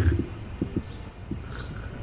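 Outdoor background in a pause between words: a low steady rumble of wind on the microphone, with a few faint short sounds.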